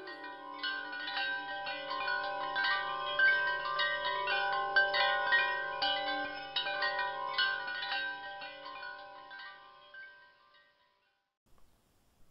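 Wind chimes ringing: many irregular strikes of overlapping, sustained bell-like tones over a faint low drone, fading away about ten seconds in.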